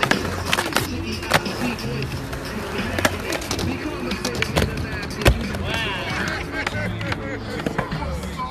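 Skateboard wheels rolling on concrete, with repeated sharp clacks of boards popping and landing; the loudest clack comes about five seconds in. Music and voices run underneath.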